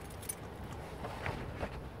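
Low steady rumble inside a car cabin, with light, irregular clicks and jingles over it.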